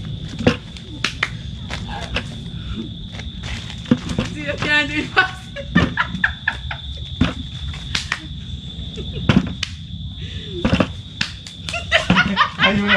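Cocoa pods being dropped into a plastic bucket, a series of irregular knocks and thumps a second or so apart, with rustling of dry leaves, over a steady high-pitched tone.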